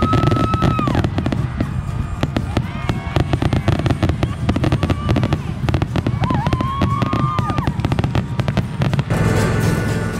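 Aerial fireworks display going off close by: a dense run of bangs, pops and crackling from bursting shells, with two long whistling tones, one at the start and one about two-thirds through. The barrage breaks off about nine seconds in.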